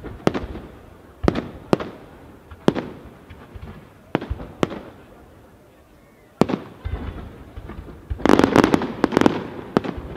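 Aerial firework shells bursting: single sharp bangs every second or so, then a dense run of rapid crackling reports near the end, the loudest part.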